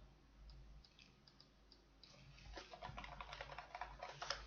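Faint computer keyboard typing: a few scattered keystrokes at first, then a quicker run of keystrokes from about halfway through.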